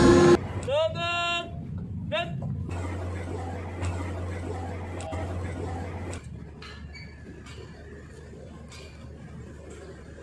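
Ensemble music cuts off abruptly at the start, followed by two short calls of a voice. Then comes a steady low hum of outdoor background noise with a few faint ticks, which drops in level about six seconds in.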